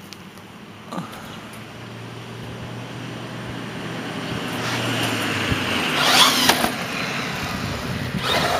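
Electric RC monster truck on a 4S battery driving off the porch and down concrete steps, its drive motor whirring louder about six seconds in. Underneath is a steadily rising vehicle-like noise.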